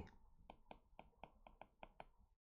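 Faint taps of a stylus tip on a tablet screen while handwriting, about four a second at slightly uneven spacing.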